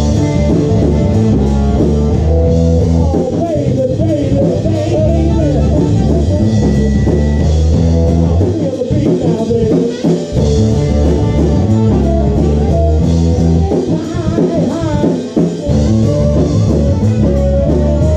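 Live blues band playing: electric guitars, bass and drums, with harmonica and saxophone over them.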